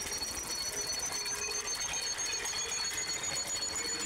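Rapid, dense mechanical ticking and whirring like running clockwork, with two steady high-pitched whines, one slowly rising in pitch. It is a film sound effect of a brass clockwork time-machine device running.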